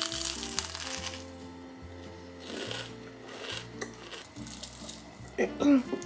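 A crunching bite into a crisp-crusted pastry about a second long at the start, then another brief crunch of chewing a couple of seconds later, over background music.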